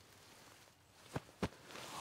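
Quiet, with two sharp clicks about a quarter second apart just past the middle, followed by a faint rising rustle of clothing as two people in camouflage hug and shift close to the microphone.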